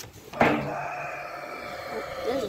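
A kitten meowing: one long, drawn-out cry starting about half a second in.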